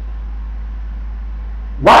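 A steady low hum with a faint hiss, and a man's voice coming back with one word near the end.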